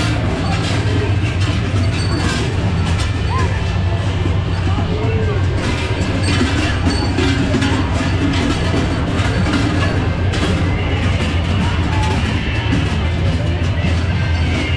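Loud music with people's voices mixed in, at a steady level, with scattered clicks and knocks through it.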